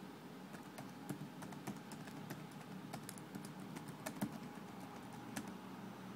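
Typing on a computer keyboard: irregular, fairly quiet keystroke clicks, a few a second.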